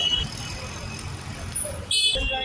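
Low rumble of road vehicles and engines in a busy urban forecourt. A high, steady electronic beep cuts off just after the start, and another sudden high tone begins near the end.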